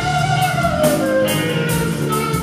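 Metal band playing live: electric guitars, bass and drum kit, with a lead line that falls in pitch over the first second or so.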